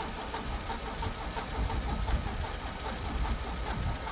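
Vauxhall Corsa's engine idling steadily as the donor car in a jump start, a low even rumble.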